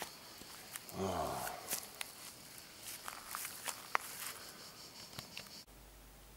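Insects chirring steadily and high in dry Mediterranean scrub, with scattered light clicks and rustles of someone moving about and a brief hum of a man's voice about a second in. The insect sound cuts off near the end, giving way to a faint low room hum.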